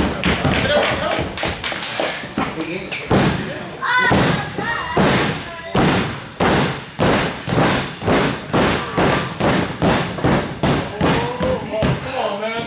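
Rhythmic thumping on a wrestling ring, sharp thuds at about two to three a second that become steady about five seconds in and run until near the end. A short shout is heard about four seconds in.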